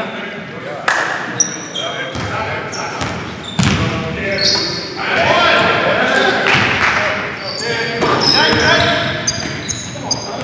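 Live basketball play in an echoing gym: the ball bouncing on the hardwood, several sharp thuds, and short high squeaks from sneakers on the floor, under players' voices.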